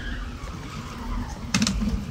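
A car doing circles in the street, its tyres skidding with a steady engine note, under a low rumble of wind on the microphone. A few sharp clicks come about a second and a half in.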